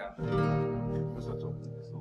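Acoustic guitar: a chord strummed just after the start, left ringing and slowly dying away.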